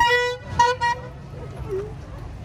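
A vehicle horn honking three times: a blast of about half a second, then two short toots in quick succession.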